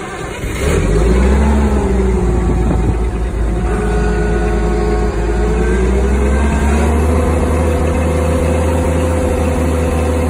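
Propane-fuelled Caterpillar V60B forklift engine catching about a second in and running. Its speed wavers at first, then rises and holds steady about seven seconds in.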